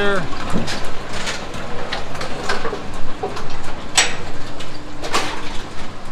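Brunswick Model A pinsetter running through its cycle: irregular metallic clanks and knocks from the rake mechanism and cam-and-roller drive, with a sharp clack about four seconds in.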